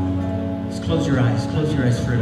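Praise band playing a soft, sustained chord on keyboard and guitars, with a man's voice coming in over it about a second in.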